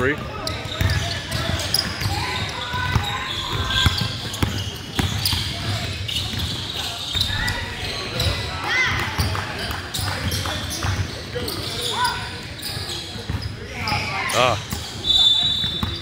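A basketball bouncing on a hardwood gym floor during play, with voices of players and onlookers in a large gym.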